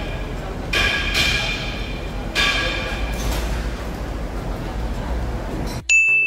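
A repeating ringing tone: pulses under a second long, about every second and a half, over a steady low hum. Near the end it cuts off suddenly and a single high ding sounds.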